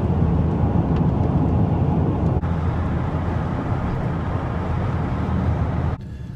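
Steady engine and road noise heard from inside a vehicle's cab while it drives at highway speed.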